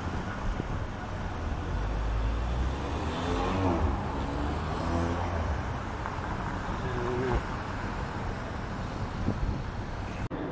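City street traffic: a steady low hum of passing cars, swelling louder for a few seconds as a vehicle goes by a couple of seconds in.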